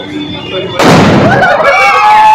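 A firecracker bursts with a sudden loud bang about a second in, thrown among a crowd of women on a market street, followed by raised voices.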